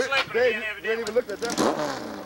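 People's voices talking, the words unclear, with a brief rushing noise about one and a half seconds in.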